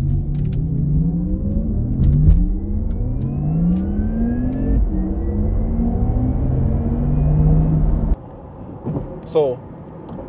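Porsche Taycan Turbo accelerating hard, its synthesized sport sound and electric-motor whine rising in pitch. About five seconds in the pitch drops and climbs again, which the driver thinks was the two-speed transmission changing into second gear. The sound cuts off abruptly about eight seconds in.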